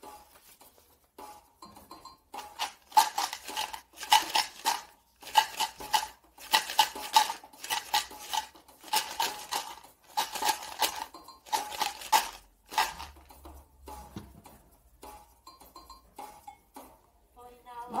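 Homemade shaker made from a plastic bottle filled with dry pasta, shaken in a steady rhythm of quick rattles, with a pause about two-thirds of the way through.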